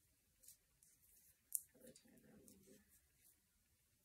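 Faint clicks and rustles of hands tying hemp string around a small rock, a handful of light ticks with one sharper click about a second and a half in.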